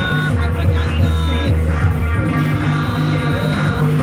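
Live band music played loudly, with a steady bass line and held melody notes.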